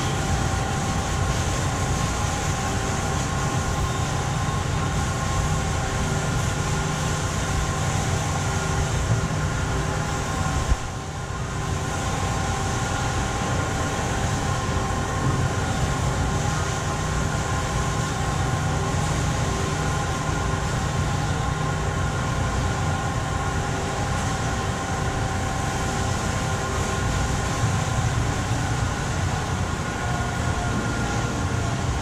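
Steady drone of machinery, a low rumble with several constant humming tones, with a short dip about eleven seconds in.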